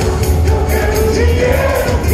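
Heavy metal band playing live with a singer: loud full band, drums and cymbals keeping a steady beat of about four hits a second under the vocals.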